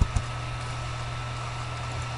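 Steady electrical hum and hiss of the recording setup, with a faint high whine, and two quick clicks at the very start as the AutoCAD Box command is started from the computer.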